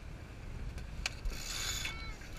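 Sailboat rigging line being hauled through a block at the mast as the topping lift goes up: a couple of sharp clicks, then a short rasping run of rope through the pulley about a second and a half in, over a low wind rumble.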